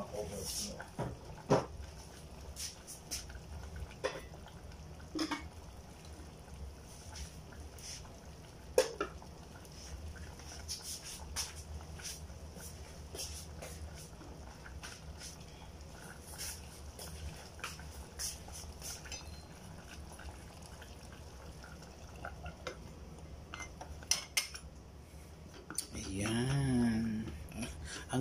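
Scattered clinks and knocks of metal cookware, from an aluminium pressure cooker and a steel pot being handled on the stove, over a steady low hum. Near the end comes a quick cluster of metal clicks as the pressure cooker's lid is fitted on.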